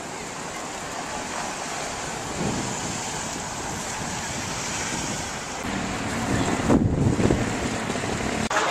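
Wind rumbling and buffeting on the camera microphone over outdoor street noise, with a stronger gust about six to seven seconds in.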